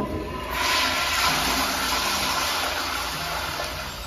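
A Kohler commercial toilet flushing through a flushometer valve: a loud rush of water that swells about half a second in, then slowly eases off as the bowl refills.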